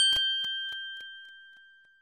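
A single bell-like ding, struck once and ringing out with a clear tone that fades away over about two seconds: the cue chime between items of a recorded listening exercise.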